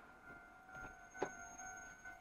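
Level-crossing warning signal ringing steadily and faintly as a passenger train passes, with a few short clicks, the sharpest a little past a second in.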